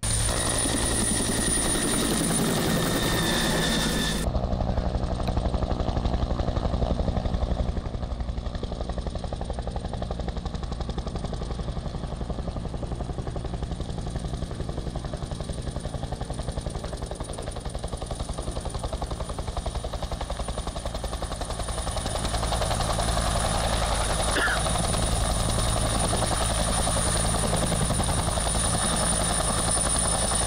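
Two-blade military utility helicopter's rotor and turbine running steadily in flight. It is fainter through the middle and louder again after about 22 seconds.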